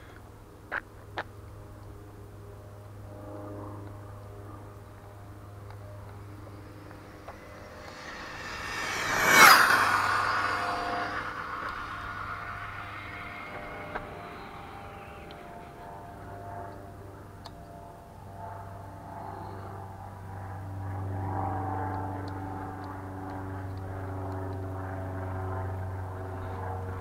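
Traxxas Slash 4x4 RC truck, with a Castle 2200kV brushless motor and Mamba Monster 2 ESC on 6S, passing at high speed. Its whine swells, peaks and falls away over about three seconds near the middle, over a steady low hum. Two sharp clicks come about a second in.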